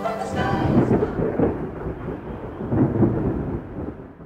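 A long rumble of thunder, rising and easing in uneven swells and fading away near the end.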